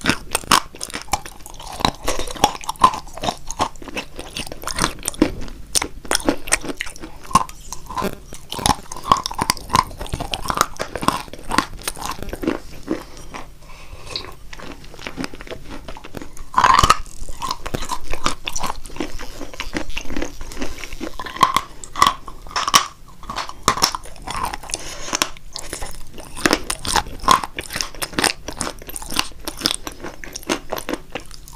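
Chunks of eating chalk coated in a creamy sauce bitten and chewed close to a microphone: dense, crisp crunches many times a second, with one especially loud bite a little past halfway.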